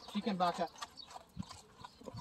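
A ridden thoroughbred racehorse walking on a dirt track, its hooves giving a few scattered dull thuds, after a brief voice near the start.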